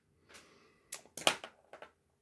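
A handful of short, sharp clicks spread over about two seconds, the loudest a little past the middle.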